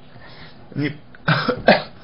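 A man coughs briefly in a pause of his speech, about one and a half seconds in.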